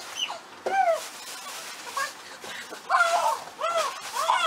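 A toddler's high-pitched babbling squeals, short rising-and-falling calls: one near the start and several in quick succession near the end.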